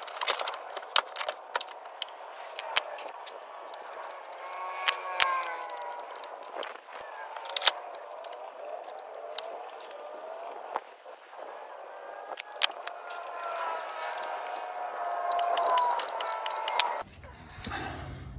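Repeated sharp clicks and clanks of truck batteries being set into an engine bay and their cable terminals being fastened, with faint voices in the background.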